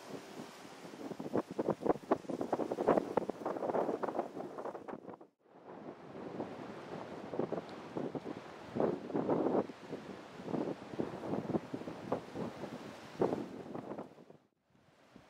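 Gusty wind buffeting the camera microphone in uneven surges, with a brief dropout about five seconds in.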